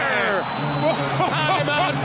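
Speech: a basketball TV commentator's drawn-out falling exclamation, then more excited commentary.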